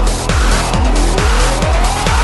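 Dark electro-industrial music: a steady, pounding kick-drum beat at about two strokes a second, with a tone that glides steadily upward in pitch through the second half.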